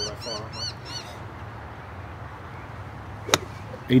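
A golf iron strikes the ball: one sharp click about three seconds in. In the first second, a bird gives a quick run of about five high, arched calls.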